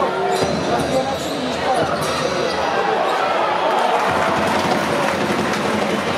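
Basketball game sound: a basketball bouncing on the hardwood court over the continuous chatter of arena spectators.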